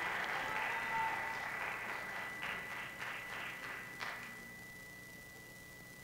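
Audience applause dying away, thinning to a few scattered claps and ending about four seconds in. A faint steady high-pitched tone runs underneath throughout.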